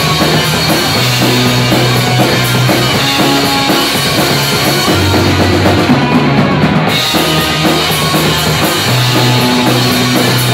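Rock band playing live in an instrumental stretch: electric guitar, electric bass and drum kit. The high cymbal wash stops for about a second around six seconds in, then the full band comes back in.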